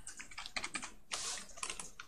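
Computer keyboard typing: a quick run of soft key presses as a word is deleted and new letters are typed.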